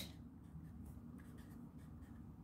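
Felt-tip marker writing on paper: faint, short scratchy strokes.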